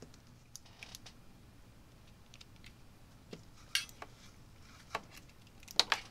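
Scattered light clicks and taps of a CPU water block and its RGB cable connector being handled and plugged in, the sharpest tap just before the end.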